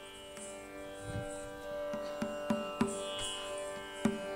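Steady Carnatic drone from an electronic shruti box, with a few scattered ringing mridangam strokes starting about a second in.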